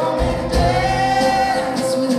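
Live band music: a voice sings a held note over acoustic guitar, bass guitar and saxophone, with a deep bass note sounding from just after the start until near the end.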